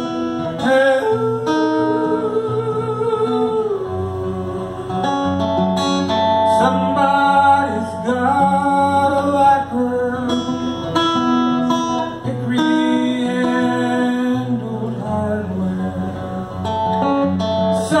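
Acoustic guitar playing an instrumental break between verses of a song, with a wordless vocal melody held over it in long, steady notes.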